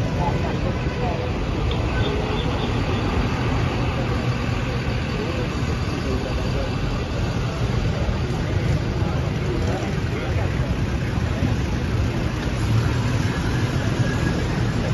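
Engine of a Roshel armoured vehicle running close by, a steady low rumble with no change in pitch, with voices of people around it.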